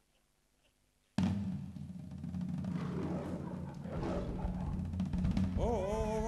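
About a second of silence, then low drum music starts abruptly and keeps going as a dense, rolling rumble that cues the lion's entrance. Near the end a short pitched call rises and then holds.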